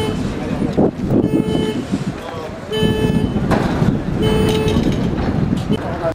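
A vehicle horn sounding in three regular half-second blasts, one about every second and a half, over a jumble of people's voices and street noise.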